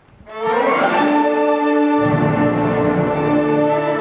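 Orchestra, led by bowed strings, comes in loudly about half a second in after near quiet, holding sustained chords. Low strings join about two seconds in.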